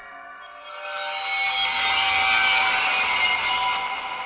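A rasping, hiss-like electronic noise that swells up over about two seconds and then slowly fades, with a few faint steady tones beneath it.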